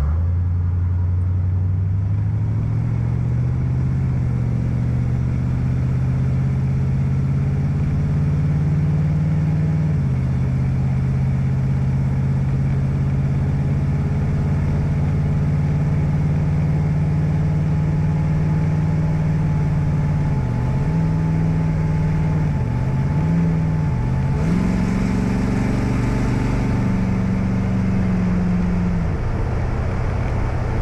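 5.2 Magnum V8 accelerating under way, its pitch rising, then dropping at an upshift about a third of the way in and holding steady. About two-thirds through, the engine note dips and recovers three times as the 46RH transmission hunts between third and overdrive, a surge that the owner means to cure by adjusting the vacuum switch. A hiss comes in near the end.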